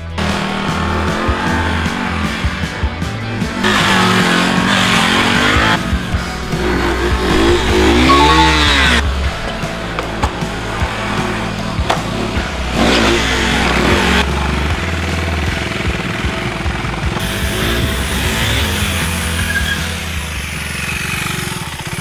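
Background music with a steady low beat over a KTM 390 Duke's single-cylinder engine revving up and down as the stunt bike is ridden around ramps. The sound changes abruptly several times.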